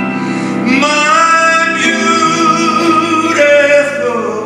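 Live song with piano accompaniment: a singing voice rises onto a long held note about a second in and sustains it for over two seconds, with piano chords underneath.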